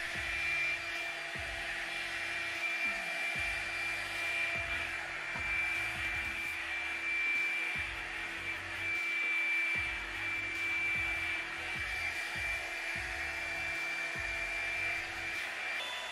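Revlon One-Step hot-air dryer brush running steadily: a continuous rush of air with a thin, steady high whine from its motor.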